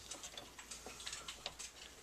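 Faint, irregular clicks from the tuning mechanism of a 1939 Zenith Shutterdial console radio as its tuning knob is turned.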